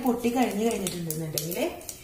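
A woman speaking, with a few faint clicks.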